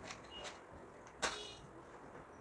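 Small clicks of a cardboard matchbox being slid open, then a single match struck on the box a little past a second in: a short scrape, the loudest sound, trailing off briefly as the match catches.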